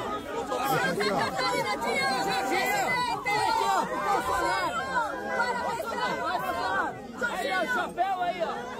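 A crowd of many people talking and calling out at once, close by: a dense tangle of overlapping voices with no single speaker standing out.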